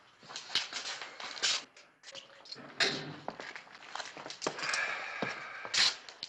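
Footsteps and scattered knocks, with sharper knocks about three seconds in and just before the end.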